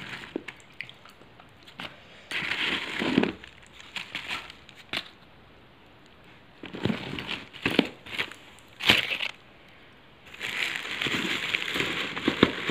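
Plastic bag and paper wrappers rustling and crinkling in irregular bursts as a hand rummages through a parcel of slate pencils and chalk, with a few light clicks.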